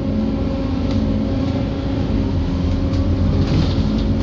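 A moving double-decker bus heard from inside on its upper deck: a steady low drone of engine and road noise, with a constant engine hum running through it.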